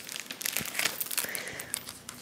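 Clear plastic packaging of a carded pack of craft buttons crinkling as it is picked up and handled: a quick run of small crackles and rustles.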